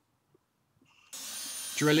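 Quiet for about the first second, then a cordless drill starts abruptly and runs steadily, boring into a wooden batten.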